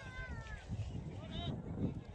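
Faint distant voices calling out, heard as a few brief pitched calls over a low rumble.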